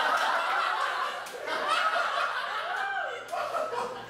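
Audience laughing at a punchline in a small theater, with a few voices and chuckles mixed in; the laughter eases off briefly twice.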